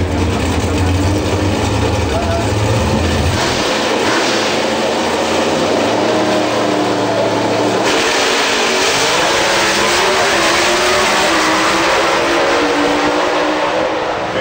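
Pro Stock drag racing cars' V8 engines running loud at the starting line. The sound changes abruptly about three and a half seconds in, and again near eight seconds in, when it turns fuller and harsher.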